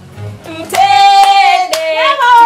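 A woman's high voice singing one long held note that slides slightly lower, with a single sharp clap near the end.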